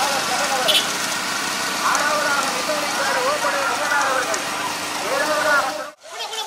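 Men's voices calling and shouting over the steady running of a vehicle engine and road noise. The sound cuts off suddenly just before the end.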